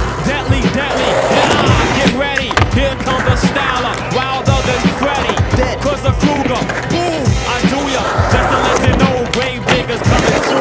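Skateboard wheels rolling on concrete ramps with repeated clacks and knocks of the board, under background music with a steady bass line.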